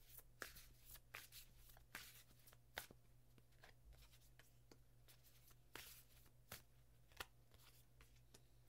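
A tarot deck being shuffled and handled by hand: faint, irregular light snaps and slides of the cards, over a low steady hum.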